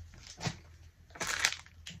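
Thin plastic packaging crinkling as a small blind bag with a plush figure is handled. It comes in two short bursts, the second and louder a little over a second in.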